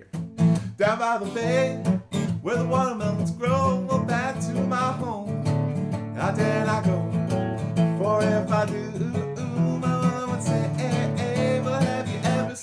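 Steel-string acoustic guitar strummed in a steady, lively rhythm, with a man's voice singing over it.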